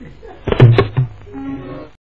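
A quick run of four or five knocks about a second in, the loudest sound, followed by a short held note that cuts off abruptly.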